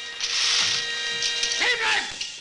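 A dense rattling, ratcheting mechanical noise over steady, held music tones, with a short wavering pitch glide near the end.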